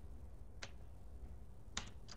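A few computer keyboard keystrokes: a single key click about half a second in and a quick pair of clicks near the end, over a faint low hum.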